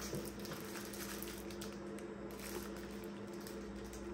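Faint crinkling and light ticking of plastic-wrapped false-eyelash trays being handled, over a steady low hum.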